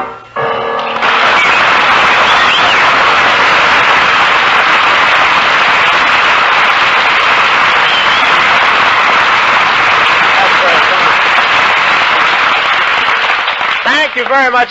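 Studio audience applauding steadily for about thirteen seconds after a big-band number ends in the first second. The sound comes from an old 1945 radio broadcast recording.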